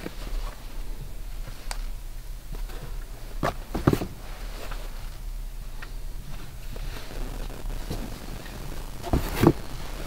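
Baseball caps being handled and stacked: soft fabric rustles and a few light taps, the clearest around three and a half and four seconds in and again near the end, over a steady low hum.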